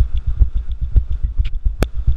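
Kawasaki ZX-10R inline-four sport bike running at low speed with a loud, uneven low throb. A single sharp click comes near the end.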